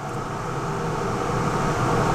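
Laars Mascot FT gas boiler running just after its call for heat is switched off. A steady fan-like rush with a low hum grows gradually louder.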